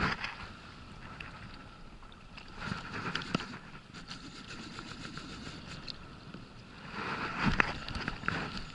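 Baitcasting reel's drag giving line in short bursts as a strongly pulling hooked fish takes line against a tight drag setting. The bursts come near the start, about three seconds in and near the end, over steady wind and water noise.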